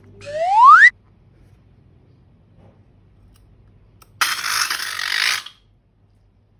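A loud rising whistle, like a slide-whistle cartoon sound effect, gliding up in pitch for under a second. About four seconds in comes a hissing rush lasting just over a second.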